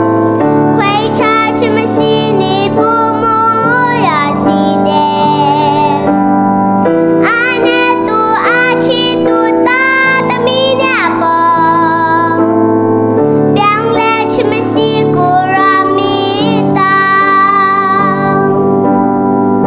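A young girl singing into a headset microphone while accompanying herself on a Yamaha MX88 keyboard, playing held chords under her sung phrases, with short pauses between lines.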